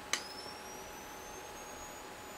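Nikon SB-800 speedlight firing with a sharp click just after the start, then its faint, high charging whine rising slowly in pitch as the flash recycles.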